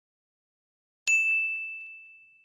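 A single bright bell-like ding, a notification chime sound effect, struck about a second in and ringing on as it slowly fades.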